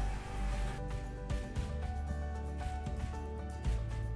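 Background music: an instrumental track of held notes over a low bass that changes a few times.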